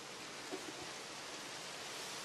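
Faint, steady hiss of outdoor background noise, with one small tick about half a second in.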